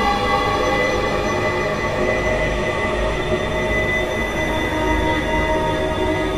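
Dark ambient drone music: many sustained tones layered over a dense, low, rumbling and grinding noise bed, holding steady without beats or breaks.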